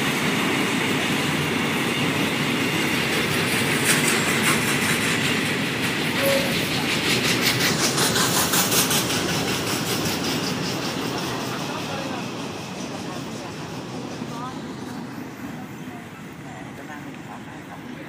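A train running along the tracks, its wheels clattering rhythmically over the rail joints. It is loudest in the first half and fades away from about ten seconds in.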